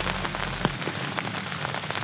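Steady rain pattering, with many separate drops ticking.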